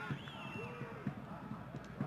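Football stadium crowd noise, a steady murmur with scattered shouts and calls from the stands.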